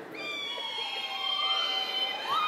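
Several women in the audience giving the Zeta Phi Beta sorority call in answer to a roll call of their sorority: high held cries from overlapping voices, with a fresh rising cry near the end.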